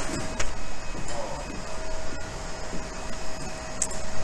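Steady machine hum of a workshop full of 3D printers running, with a faint steady whine over a low noisy drone.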